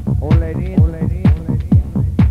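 Electronic dance music from a club DJ set: a steady four-on-the-floor kick drum at about two beats a second, with a melodic line that bends in pitch coming in just after the start.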